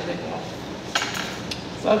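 Eating utensil clinking against dishware: one sharp tap about a second in, followed by a couple of lighter taps.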